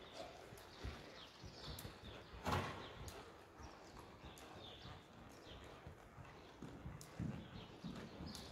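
Soft, irregular hoofbeats of a horse walking on a soft sand arena surface, with one louder, brief noise about two and a half seconds in.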